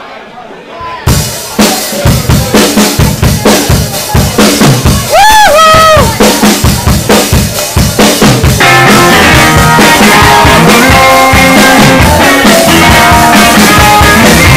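Live rock band starting a song: a drum kit plays a beat alone from about a second in, with a short whooping voice about five seconds in, then distorted electric guitars and bass come in with the full band about eight and a half seconds in.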